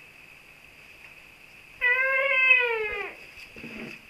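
A baby's single drawn-out wail, about a second long, holding its pitch and then sliding down as it fades.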